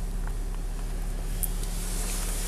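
Land Rover Discovery 4's 3.0-litre V6 diesel idling, heard from inside the cabin as a steady low hum.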